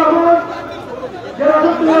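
Speech: a man's voice drawing out long, held syllables, breaking off for about a second in the middle.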